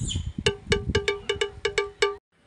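A quick run of about nine short musical notes, all on the same pitch, about five a second: a comedy sound effect added in editing. There are low rumbles in the first second.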